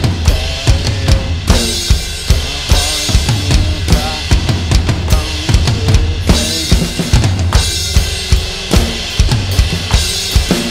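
Electronic drum kit playing a driving 6/8 groove: kick drum on every beat of the six, snare on four, and cymbal crashes landing regularly, with small fills, building intensity toward a final chorus.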